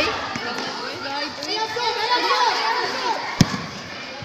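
Several young voices calling out over a futsal game, with one sharp thud of the futsal ball about three and a half seconds in.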